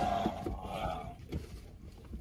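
Faint rustling and a few soft knocks as a man shifts across a car seat and climbs out of the car.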